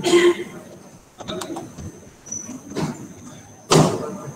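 Several sudden loud noises, the loudest just before the end, with brief indistinct voice sounds between them over a thin steady high tone.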